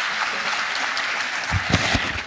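Audience applauding: a steady clatter of many hands clapping, with a few low thumps near the end.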